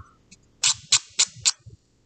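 Nail file scraping along the edge of a paper-covered metal washer, sanding off the excess glued paper: four quick strokes in the second half, about three or four a second.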